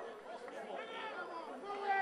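Indistinct chatter of spectators' voices talking near the sideline.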